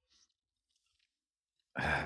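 Near silence in a pause between speakers, with a faint breath; speech starts near the end.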